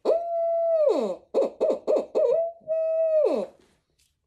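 Tube-style owl hooter call (a brute hoot) blown to imitate an owl. It gives a long held hoot that drops at its end, a quick run of about five short hoots, then another long hoot falling away. This is a locator call used to make turkeys gobble.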